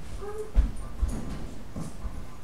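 A young child making short wordless vocal sounds, with a couple of dull thumps about half a second and a second in.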